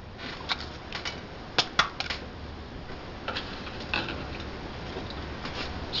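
Light clicks and taps from small glass dishes and a glass plate being handled on a wooden board, mostly in the first two seconds and again about three to four seconds in, over a steady low hum.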